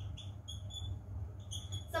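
Dry-erase marker squeaking on a whiteboard during handwriting: a run of short high squeaks, one per stroke, with a brief pause in the middle. A steady low hum runs underneath.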